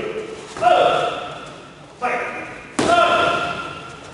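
Three short shouted calls during kickboxing partner drills in a gym hall, each one trailing off. A sharp slap of a strike landing comes near three seconds in.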